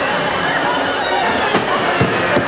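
Live studio audience laughing and calling out in a loud, continuous crowd noise, with a couple of sharp knocks near the end.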